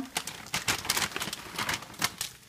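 Frozen mixed stir-fry vegetables crackling in a hot frying pan, a dense, irregular run of sharp pops as they start to cook.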